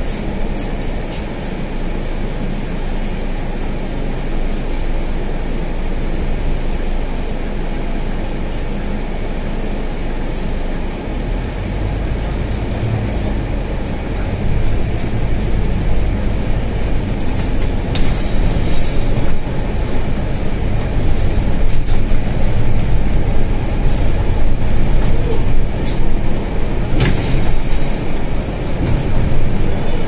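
Interior noise of a Scania N320 city bus under way: steady diesel engine and road rumble that grows louder about halfway through as the bus picks up speed. Two brief clattering noises come later on.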